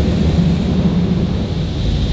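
Touchless automatic car wash spraying high-pressure water over the car, heard from inside the cabin as a loud, steady rumble.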